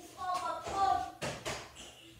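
A child's voice in the first second, then two sharp taps about a third of a second apart.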